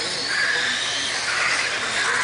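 Radio-controlled race cars lapping the track, their motors whining at a high pitch that rises and falls as the cars speed up and brake; several whines overlap.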